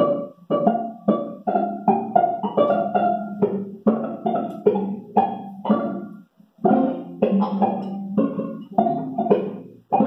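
Live band music: a string of separate, sharply attacked pitched notes, each dying away, about two to three a second in an uneven rhythm, with a brief break a little past the middle.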